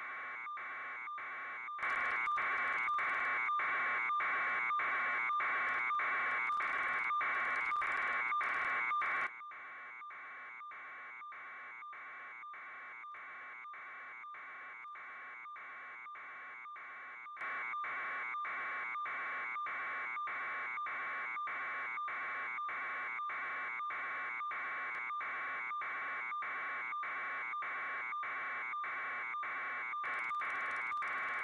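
A steady electronic buzz pulsing about two and a half times a second, stepping louder and softer in abrupt blocks.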